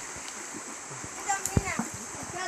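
Children splashing and playing in a shallow stream, over the steady sound of running water. About a second and a half in comes a sharp splash together with brief high-pitched children's shouts.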